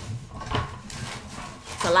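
Low, indistinct voices and soft laughter, with a brief handling noise about half a second in; a woman starts speaking clearly near the end.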